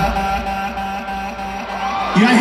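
Live pop music through an arena sound system coming to an end: the bass drops away and a held chord fades out, with the hall's echo behind it.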